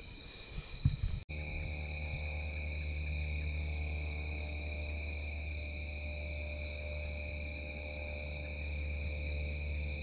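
Dusk insect chorus: steady high-pitched trilling with short chirps repeating above it, over a low steady hum. A few soft knocks come in the first second, before an abrupt cut.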